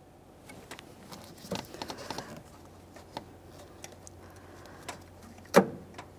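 Light plastic ticks and rustles as a gloved hand works an electrical connector onto a vapor canister purge solenoid valve, then one sharp click near the end as the connector's locking tab snaps home, the sign it is fully seated.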